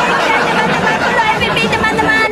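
Several voices talking over one another in a dense, loud babble, with no single voice standing out.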